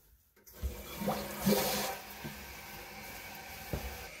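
Kohler Cimarron toilet tank refilling after its water supply is turned back on. About half a second in, the fill valve opens and water hisses and runs into the emptied tank, with a brief louder hiss early on and a few light knocks.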